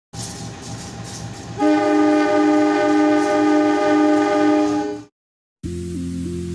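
A diesel locomotive's air horn sounds one long chord-like blast of about three seconds over a low rumble, then cuts off abruptly. Electronic music starts just before the end.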